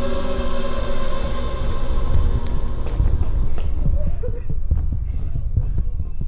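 A low, irregular throbbing rumble, with held tones of a music score fading out over the first few seconds.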